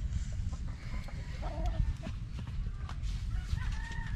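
Rooster clucking, with a drawn-out crow-like call starting about three and a half seconds in. Small sharp clicks of pliers working wire, over a steady low rumble.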